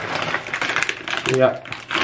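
Thin plastic shopping bag rustling and crinkling in quick crackles as a hand rummages inside it, for about the first second and a half.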